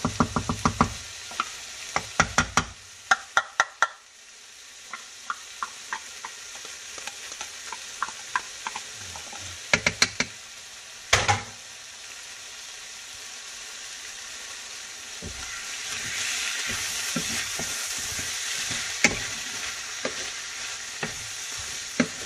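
A skillet of ground turkey, zucchini, diced tomatoes and green chilies frying on the stove, with quick clicks and taps in the first few seconds and a couple more about ten seconds in as a glass jar is emptied into the pan. From about fifteen seconds in, the sizzling gets louder and steadier.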